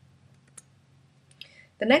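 A few faint, separate clicks of computer input over a low steady hum, then speech starts near the end.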